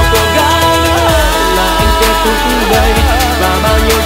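Vietnamese pop ballad playing, with a steady beat under sustained chords and a sung melody line.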